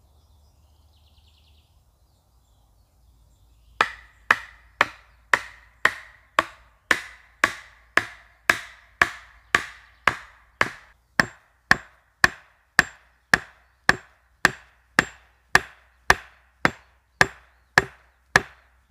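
A hatchet striking the top of a wooden stake again and again, driving it into the ground: sharp, evenly paced knocks with a short ring, about two a second, starting about four seconds in.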